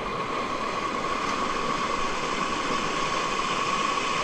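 Stream water rushing over rocks close by: a steady, even rush, with a thin steady tone running along above it.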